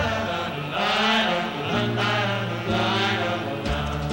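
A choir singing sustained harmonies over a big-band backing, in three long swells with held bass notes underneath.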